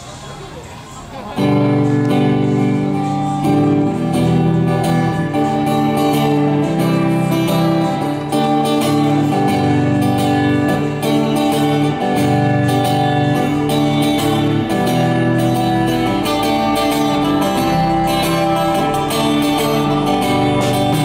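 A live band starts playing about a second in: amplified acoustic and electric guitars strum steady chords over drums.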